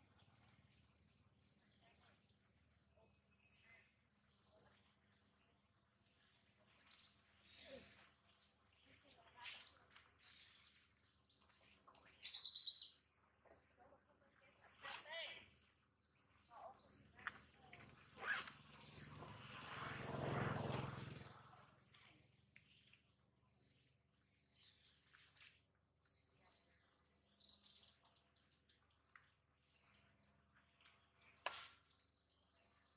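Small birds chirping steadily, a rapid run of short, high notes that carries on throughout, with a louder, fuller stretch of lower sound about two-thirds of the way in.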